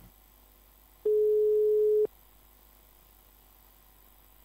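A single steady electronic beep, one pure mid-pitched tone lasting about a second, starting and stopping abruptly a second into an otherwise nearly silent stretch.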